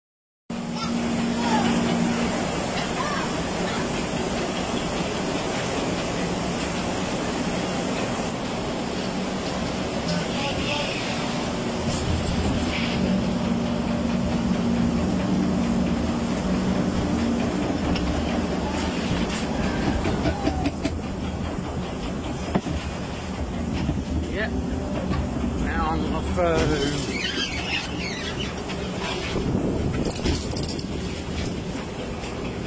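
Log flume lift conveyor running as it carries the boat up the incline: a steady mechanical hum with clatter and rattling throughout, starting about half a second in.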